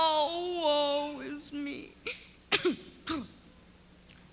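A child's voice, drawn out in a sing-song way for the first second and a half, then two short throaty sounds about two and a half and three seconds in.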